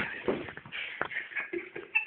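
Rustling and shuffling handling noise, with a few sharp clicks and knocks scattered through it.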